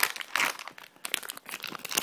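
A wrapper crinkling in irregular crackles as a small vinyl toy figure inside it is picked up and turned over in the hand.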